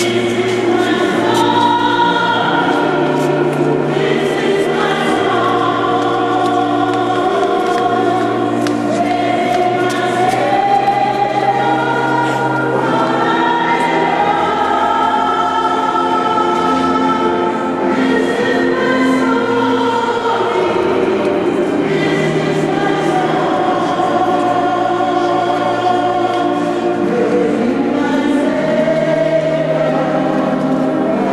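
Choir singing slow music in long held notes over low sustained bass notes.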